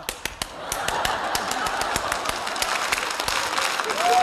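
Studio audience laughing and clapping. The claps start scattered and fill out into steady applause over crowd laughter about a second in.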